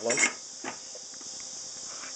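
A saw blade being handled on a table saw arbor: a single faint metallic click well under a second in. It sits over a steady, high-pitched hiss.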